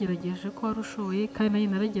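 A woman talking continuously, with a faint steady hum running under her voice.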